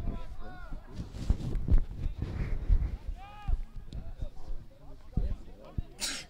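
Men's voices shouting and calling out across a football pitch during play, in short separate calls, with irregular low thuds underneath.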